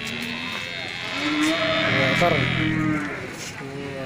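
A cow mooing: one long, low call starting about a second in and lasting about two seconds.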